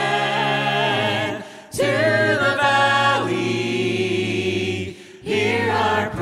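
Men's and women's voices singing a worship song a cappella in parts, held low bass notes under the melody. The singing breaks briefly twice, about two seconds in and near the end, before the next phrase.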